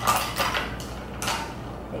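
Ice cubes tumbling out of a bowl into a plastic shaker cup of tea, in three short clattering bursts.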